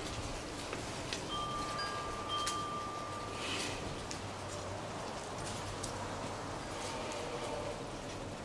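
Soft ringing chime notes: a few steady high tones that each hang for a second or two, over a faint background hiss.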